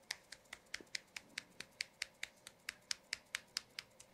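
A rapid run of sharp clicks, about five a second, from a hand-held massage tool tapping at the back of the head and neck during a head massage.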